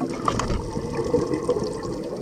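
Water rushing and sloshing around an underwater camera as it moves through the water, a steady low rush with scattered faint clicks.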